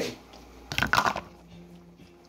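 A short clatter of knocks from a plastic kitchen bowl being handled over a cooking pot, about three-quarters of a second in, followed by a faint steady hum.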